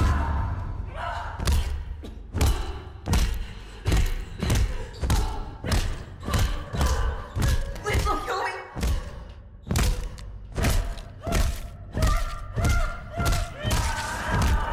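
A long run of heavy punches thudding into a body, one blow about every two-thirds of a second, coming faster near the end.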